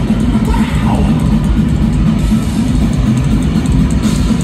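Hardcore punk band playing live: electric guitars, bass and drum kit, loud and continuous, heard from within the crowd.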